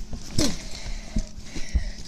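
Close-up handling noise: fabric rustling and a few dull bumps as a cloth bag is grabbed and pulled in against the microphone.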